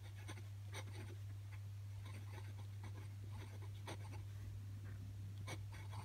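Glass pen nib scratching across paper in short, irregular strokes as a word is written, over a steady low hum.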